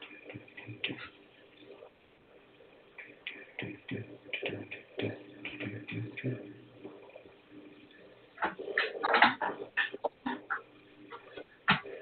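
Indistinct, muffled voice sounds and short bumps heard over a narrow-band telephone line, busiest about eight to ten seconds in.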